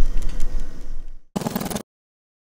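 A low rumble that stops abruptly about a second and a quarter in, followed by a half-second burst of music and then silence.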